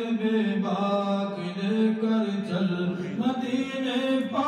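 A man singing a naat in Urdu, unaccompanied, drawing out long held notes that bend slowly in pitch, with a few short breaths between phrases.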